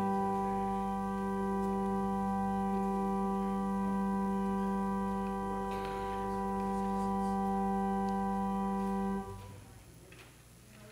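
Church organ holding a steady chord with low pedal notes, the closing chord of the prelude, released about nine seconds in with a short reverberant fade.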